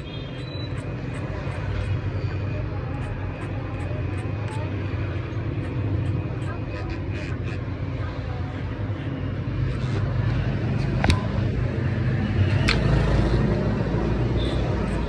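Electric hair clippers buzzing steadily as they cut short hair over a comb, with a couple of sharp clicks late on.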